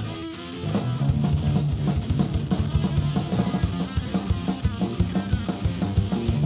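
Live rock band playing from an old cassette recording. Guitar alone at first, then drums and the full band come in loud with a fast, steady beat about a second in.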